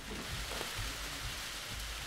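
Dense, steady clatter of many camera shutters mixed with the rustle of a large press room.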